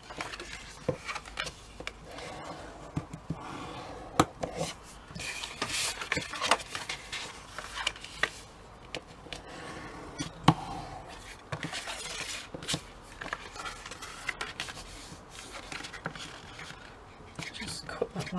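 Scrapbook card being folded by hand and its creases pressed flat with a pair of scissors standing in for a bone folder: paper rustling and scraping on the cutting mat, with scattered sharp clicks.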